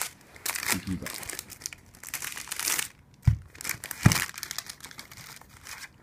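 Plastic wrapping crinkling and rustling as a tablet is handled and unwrapped by hand, with two short low thumps about three and four seconds in.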